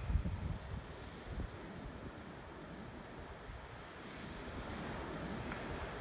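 Wind and sea surf: a steady rushing noise, heaviest in the low end, that swells gradually over the last couple of seconds.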